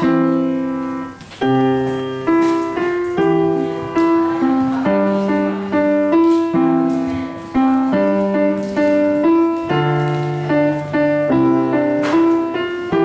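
Upright piano played with both hands: a simple piece of melody notes over low chords, each struck note ringing and fading, with a brief break a little over a second in.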